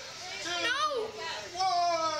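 A young boy's high-pitched, frightened whimpering with no clear words: a short rising-and-falling cry about halfway through, then a longer, higher held whine near the end.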